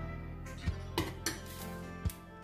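Metal spoons clinking together three times in quick succession, then a short scrape, as sticky white-chocolate nut clusters are pushed off one spoon with the other. Background music with sustained tones plays underneath.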